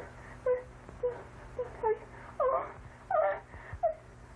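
High, whimpering moans from a voice: about eight short cries, each bending in pitch, coming roughly two a second and loudest about halfway through.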